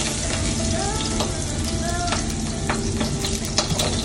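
Chopped garlic frying in hot oil in a non-stick pan, sizzling steadily, with scattered short clicks.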